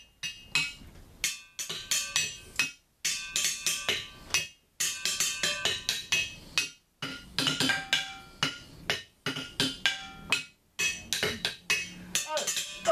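A quick, irregular run of sharp knocks and clinks, many of them leaving short ringing tones, broken by a few brief pauses.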